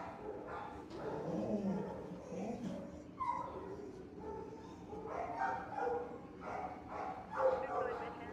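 Dogs in shelter kennels making scattered barks and whines, some as pitched cries that rise and fall.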